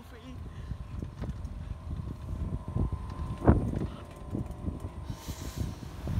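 Four-wheel pedal car rolling over pavement: an uneven low rumble with irregular knocks and rattles from its frame and wheels, and one sharp knock about midway. Wind buffets the phone's microphone.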